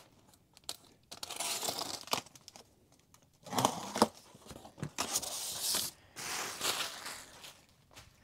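A cardboard shipping box being torn open, in four bursts of ripping and crinkling, with a few sharp knocks of cardboard about halfway through.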